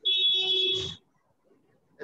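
A loud, high-pitched electronic buzzer-like tone, held steady for about a second and then cut off.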